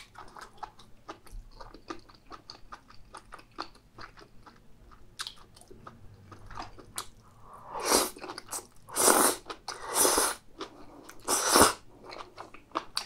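Close-miked chewing of a mouthful of chewy spicy stir-fried intestines (gopchang): many small wet clicks of the mouth working the food. In the second half come four louder, longer bursts of mouth noise, about a second apart.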